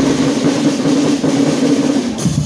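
A band of melodicas (pianikas) played together, holding one long steady note without drums.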